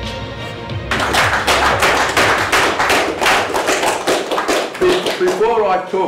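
Intro music, then from about a second in an audience applauding, dying away as a man starts to speak near the end.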